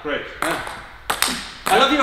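Table tennis ball being hit back and forth in a backhand rally: about four sharp clicks of ball on bat and table, roughly half a second apart. Voices and laughter start near the end.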